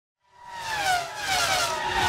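Racing car passing at speed, its engine note falling steadily in pitch as it goes by; it fades in just after the start.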